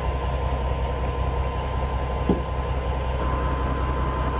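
A fishing boat's engine running steadily: a low, even hum with a faint steady whine above it.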